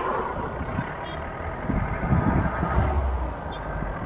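Driving noise from inside an open-top off-road vehicle at road speed: steady engine and tyre rumble with wind noise. A deeper rumble swells in the middle and fades by about three seconds in.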